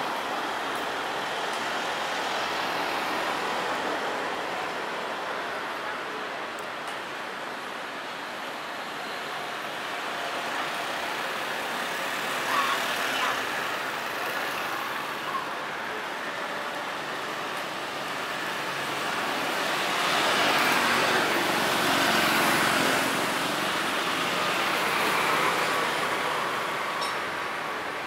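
Road traffic on a city street: cars and motorbikes passing, a steady wash of engine and tyre noise. It swells louder for several seconds in the second half as vehicles pass close by.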